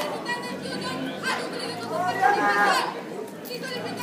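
Indistinct chatter of several spectators talking over one another, with no drumming.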